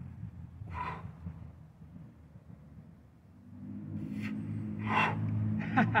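A man's sharp, forced breaths as he strains through heavy kettlebell presses: one about a second in and two more near the end, over a low steady rumble that grows louder from about halfway.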